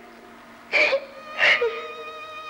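A woman crying, with two loud sobs about a second apart, over soft, sustained background music.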